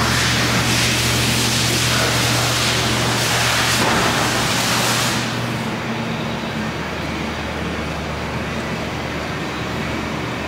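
Propane-fuelled Hyster S50FT forklift's engine running steadily under a loud hiss. The hiss cuts out about five and a half seconds in, leaving quieter running.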